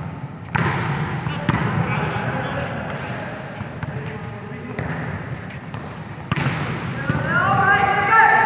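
Volleyball being struck during a rally in a large sports hall. There are a couple of sharp smacks, about half a second in and again near the end, each echoing off the hall, with players' voices calling out near the end.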